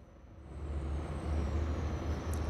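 Twin MTU 12V 2000 M96X V12 diesel engines under acceleration. Their low drone swells about half a second in and then holds steady. A faint high whine runs above it as the first turbocharger comes in.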